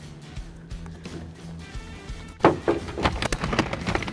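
Background music, then from about halfway a rapid series of clacks and knocks as the Gator HR1 roll-up tonneau cover's aluminum slats unroll across the pickup bed.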